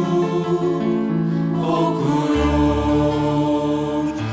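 Small vocal ensemble singing held chords in multi-part harmony. A low bass part comes in a little over two seconds in.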